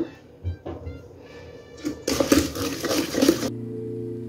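Electric hand mixer beating cake batter of eggs, sugar and oil in a stainless steel bowl, heard loudly for about a second and a half from about two seconds in. It cuts off suddenly and soft background music with steady notes takes over.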